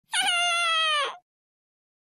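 A single drawn-out wailing cry, a crying sound effect about a second long that falls slightly in pitch before it stops.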